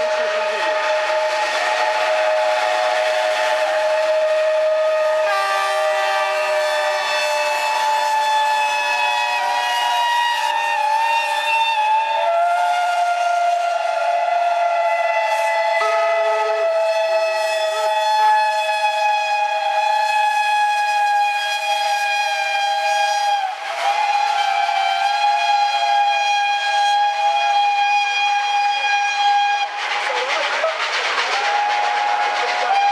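Whistles of several steam locomotives blowing at once in a long, overlapping chord, individual whistles joining and dropping out so the chord keeps shifting in pitch. A brief break comes about two-thirds of the way through.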